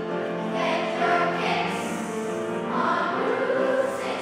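Children's choir singing a song together, many voices holding and moving between sustained notes.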